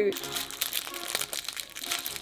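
Clear plastic sleeves on makeup brushes crinkling as they are handled, a dense, irregular run of small crackles.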